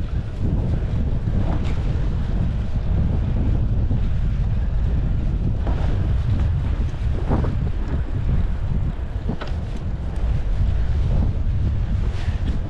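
Wind noise on a GoPro action camera's microphone from a bicycle moving at riding speed: a steady low rush, with a few faint brief knocks mixed in.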